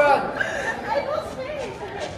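Group chatter: several voices talking in a large hall, without clear words.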